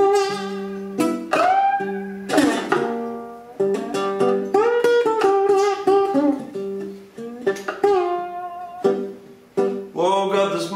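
Ukulele played slide-style: fingerpicked blues with a steady low note and melody notes that slide up and down in pitch.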